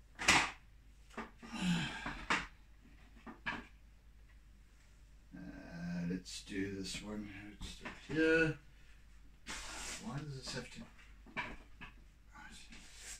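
A man muttering and murmuring to himself in short, indistinct bits that are not clear words, with a single sharp knock just after the start.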